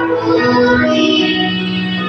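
Children's choir singing a Tagalog worship song in unison, moving between sustained notes and then holding one long note through the second half.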